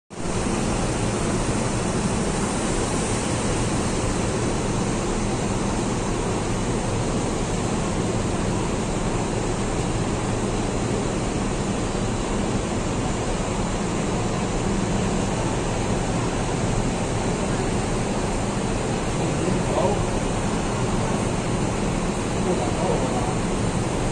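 Steady running noise of a KMB double-decker bus standing with its engine running beside the stop, a low engine hum under a constant wash of noise that holds the same level throughout.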